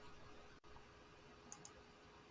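Near silence: faint steady hiss and a thin hum of room tone, with two faint short clicks close together about a second and a half in.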